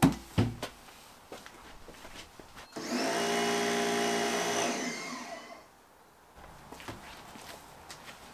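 An electric pressure washer running: a motor whine with a spray hiss starts about three seconds in, runs steadily for about two and a half seconds, then winds down. A few knocks at the start.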